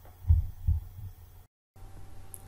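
Two dull, low thumps about half a second apart, with fainter ones after them, over a low hum. The sound drops out completely for a moment near the end.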